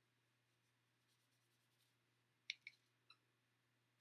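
Near silence with faint strokes of a paintbrush on paper, and three small sharp clicks about two and a half to three seconds in.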